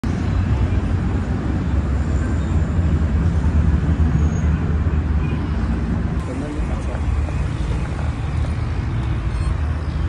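Steady low rumble of road traffic and car engines.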